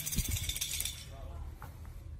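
Xóc đĩa game discs rattling inside a ceramic bowl held upside down on a plate as it is shaken. The rattle dies away about a second in, with a few low knocks as the bowl and plate are set down.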